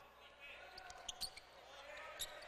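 A basketball dribbled on a hardwood court, a few sharp bounces spread through the moment, over a faint crowd murmur in the arena.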